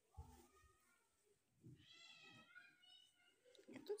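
A cat meowing softly: one drawn-out meow about two seconds in, followed by a short second mew.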